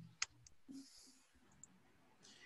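Near silence broken by a few faint, sharp clicks.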